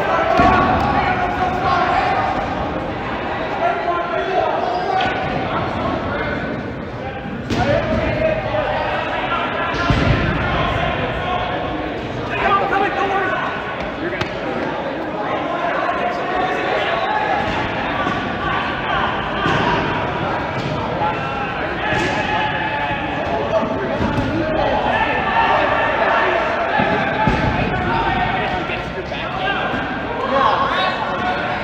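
Players' voices talking across a large gym hall, with a few rubber dodgeballs bouncing and thudding on the hard sports floor.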